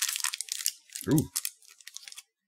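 Wrapper of a small individually wrapped chocolate crinkling and tearing as it is opened by hand, in quick crackly bursts that ease briefly about a second in.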